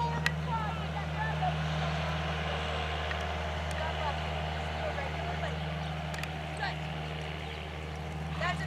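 A steady low drone like a motor running, with faint distant voices and a few light knocks over it.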